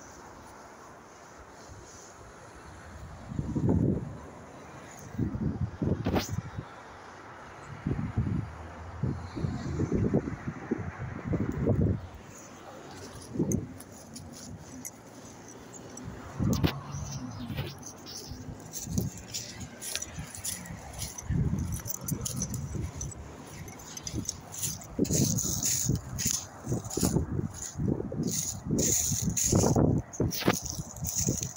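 Handling noise from a phone being carried while walking through dry undergrowth: irregular muffled thumps and rubbing, with twigs and dead leaves crackling underfoot, the crackling thickening near the end.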